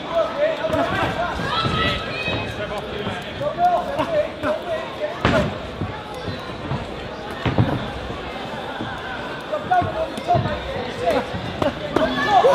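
Shouting voices from ringside during a live boxing bout, in a large hall. Several sharp thuds from the ring come through, the loudest about five seconds in and another at about seven and a half seconds.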